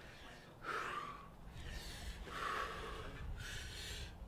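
A climber's heavy breathing while straining through hard moves on a boulder: three forceful breaths, each under a second long.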